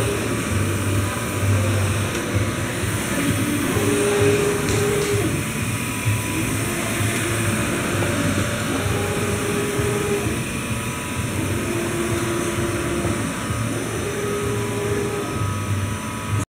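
Agfa large-format UV flatbed inkjet printer printing: the print-head carriage shuttles across the bed, its drive giving a steady whine for about a second on each pass, every two to three seconds. A constant machine hum runs underneath.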